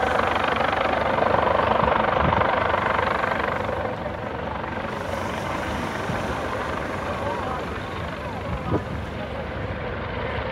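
Coast Guard MH-65 Dolphin helicopter hovering low over the water, its rotor and turbine noise a steady wash of sound, loudest in the first few seconds and then easing slightly.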